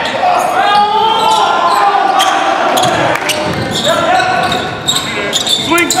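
A basketball bouncing on a hardwood gym floor during play, in a series of sharp echoing thuds, with players calling out over it and a shout of "and one" near the end.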